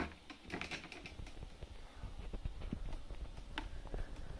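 Irregular light clicks and knocks of plastic and metal, with handling rumble, as a small projector is fitted back onto a camera tripod by hand.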